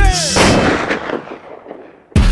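The hip-hop beat cuts off with a short falling sweep, then a single blast sound effect hits, like artillery or a gunshot. It rings out and fades away over about a second and a half.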